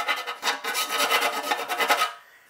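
A fine round file rasping back and forth along the edge of a cutout in a thin sheet-metal chassis, rounding off the edge of the hole. Rapid steady strokes that stop abruptly at the very end.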